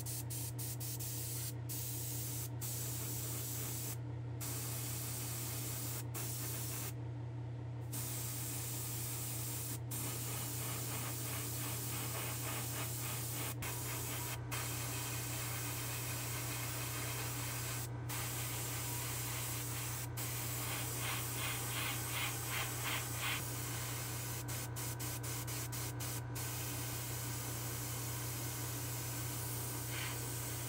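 Gravity-feed paint sprayer spraying orange paint onto a 1:64 diecast van body: a steady hiss of air and paint, pausing briefly a few times, over a steady low hum.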